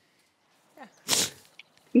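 A short, loud burst of breath from a person about a second in, after a brief near silence.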